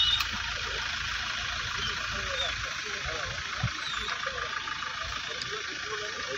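An SUV's engine idling steadily, a low even rumble, with men's voices talking over it.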